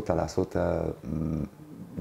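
Speech only: a man speaking Romanian in a low voice.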